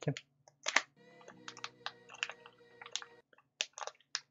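Small plastic bag crinkling and crackling in short, irregular bursts as it is cut open with a hobby knife and a small aluminium-and-brass RC wheel is unwrapped from it.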